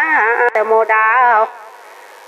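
A woman's voice singing an Iu Mien song in the Mien language, long held notes that slide up and down in pitch. The phrase breaks off about one and a half seconds in.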